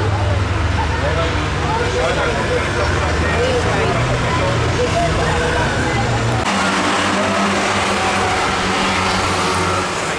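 Ministox stock car engines running steadily at low revs under a stoppage, with people talking over them. The engine hum shifts abruptly to a higher note about six and a half seconds in.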